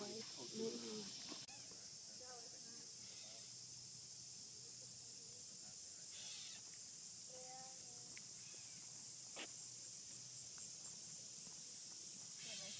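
Steady high-pitched chorus of insects in the grass, with faint voices in the first second or so.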